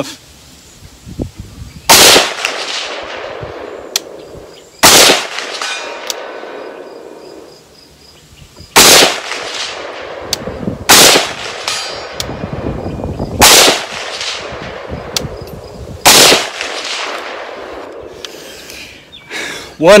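Six single shots from an unsuppressed PSA JAKL 300 Blackout pistol fitted with a birdcage flash hider. They come two to four seconds apart, and each crack is followed by a long rolling echo across the valley.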